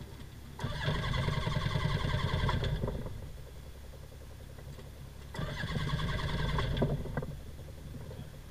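Microlight trike's rear-mounted engine being cranked over by its starter twice, about two seconds each time, with a pause between. It does not catch and run either time.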